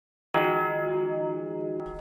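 A church bell struck once about a third of a second in, ringing with many steady overtones and slowly fading.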